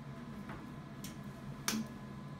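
A pen writing on paper laid on a metal tray, giving a few light clicks, the sharpest near the end, over a faint steady room hum.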